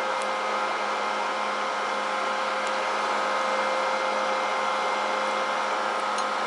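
Cooling fan running steadily: an even rush of air with a few steady hum tones in it.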